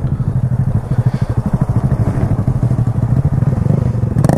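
Honda Grom's 125 cc single-cylinder engine idling: a steady, quickly pulsing low rumble.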